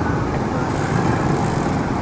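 Steady wind and road rumble from riding a bicycle along a street with traffic, picked up by an action camera's own built-in microphone.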